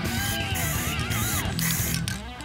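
Background guitar music over the steady hiss of an aerosol spray can laying down Rust-Oleum bright metallic silver paint.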